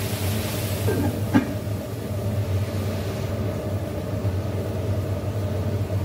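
Chicken pieces frying quietly in a wok, with a faint sizzle that thins out partway through, under a steady low hum. A single metal clink comes about a second and a half in.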